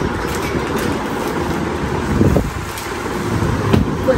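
Steady background rumble and hiss of ambient noise, with a brief louder swell about two seconds in and a faint knock near the end.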